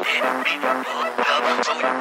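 Sped-up phonk house music: a pitched lead with curving high notes plays a fast repeating pattern of about four hits a second, with no deep bass in this stretch.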